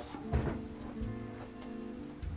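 Background music with steady held notes, from a guitar-led track.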